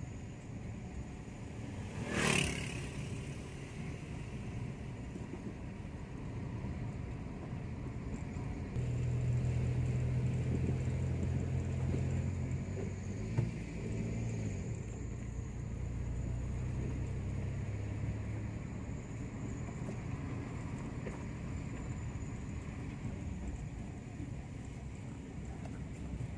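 Car heard from inside its cabin while driving on a concrete road: steady engine and tyre noise. A short sharp noise comes about two seconds in, and the engine hum grows louder and deeper from about nine seconds to about eighteen seconds, as under more throttle.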